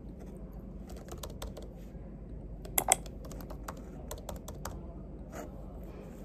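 Typing on a laptop keyboard: irregular runs of light key clicks, with two sharper, louder taps about three seconds in.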